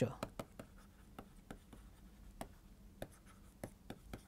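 A stylus tapping and scratching on a pen tablet as words are handwritten: a run of short, faint, irregular clicks.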